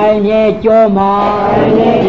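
Buddhist chanting by a man's voice, drawn out in long held tones with short breaks between phrases.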